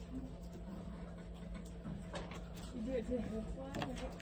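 Quiet room with a steady low hum and faint, low murmured voices in the background from about halfway through.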